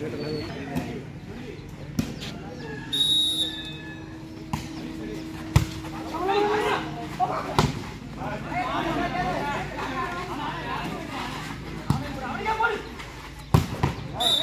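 A volleyball being hit several times in a rally, sharp slaps of hands on the ball spaced a second or more apart, amid shouting from players and onlookers. A short high whistle sounds about three seconds in.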